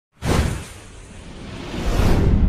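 Whoosh sound effect of an animated logo intro: a sudden swoosh with a deep rumble about a quarter second in that fades, then a second swoosh swelling up near the end.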